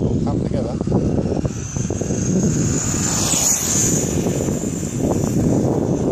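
Traxxas Rustler RC truck's electric motor and drivetrain whining high and thin as it drives, swelling a little past the middle and then fading, over a steady low rumble.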